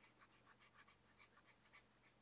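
Near silence, with faint, rapid scratching of a felt-tip marker stroking across colouring-book paper.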